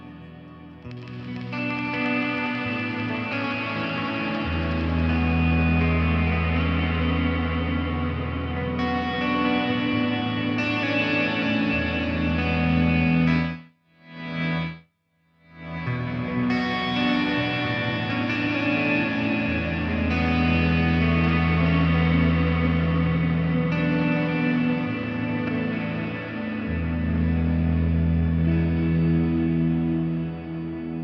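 Electric guitar played through a Zoom G3Xn multi-effects processor: long sustained low notes and chords with effects. The sound cuts out for about two seconds near the middle, then comes back with a brighter tone.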